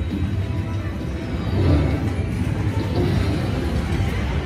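Wonder 4 Boost Gold slot machine playing its reel-spin music and sounds during a spin that pays nothing, over steady casino floor noise.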